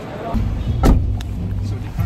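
Low, steady rumble inside a car's cabin, with a sharp knock just under a second in.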